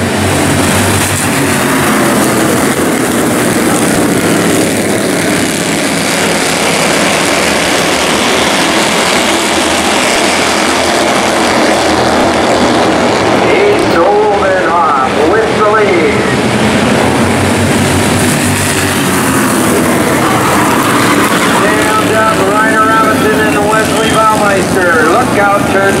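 A pack of Bandolero race cars running together at racing speed just after the start, a steady dense drone of many small engines. A voice comes through briefly about halfway and again near the end.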